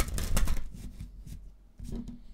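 A deck of tarot cards shuffled by hand: a quick, dense run of card slaps and riffles in the first half second that thins out, with another short burst near the end.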